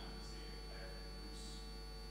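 Steady electrical mains hum with a constant high whine above it, and a faint distant voice barely showing through.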